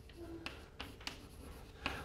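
Chalk writing on a blackboard: faint taps and scratches as the chalk strikes and drags across the board.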